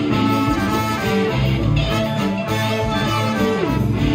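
Live blues-rock band playing an instrumental passage: electric guitars, bass and drums, with saxophone and trumpet on the stage.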